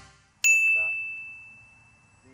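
A single bright bell-like ding about half a second in, ringing on one high note and fading away over about a second and a half, as the tail of the intro music dies out.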